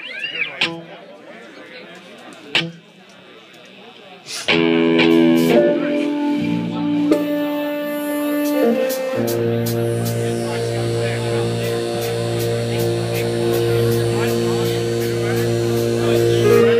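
Live band's opening: a few seconds of quieter stage sound with scattered knocks, then sustained keyboard chords come in about four and a half seconds in, and a held low note joins around nine seconds, with light regular ticking above.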